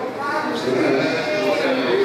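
A man preaching into a microphone in a loud, strained voice, stretching his words out into long held sounds.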